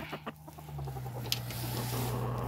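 Silkie chickens bedded down for the night giving a soft, low, steady murmur, with a light click a little past halfway.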